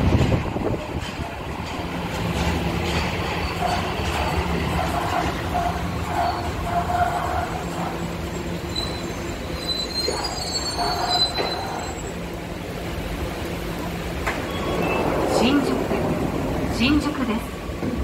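Tokyo Metro Marunouchi Line subway train pulling into the platform and braking to a stop, its running noise carrying a steady hum. A high brake squeal comes about ten seconds in as it comes to rest.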